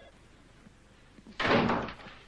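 A door slams shut about a second and a half in, one loud, short bang after a quiet moment.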